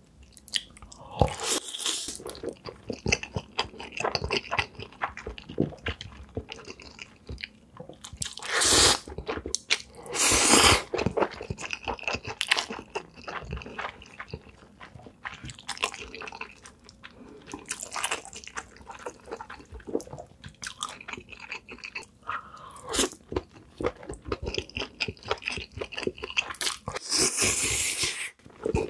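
Close-miked eating sounds of black bean noodles and spicy stir-fried baby octopus: wet chewing and lip smacking throughout. A few longer, louder slurps come near the start, twice about a third of the way in, and again near the end.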